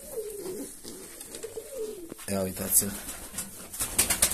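Domestic pigeons cooing, a wavering rolling coo through the first couple of seconds.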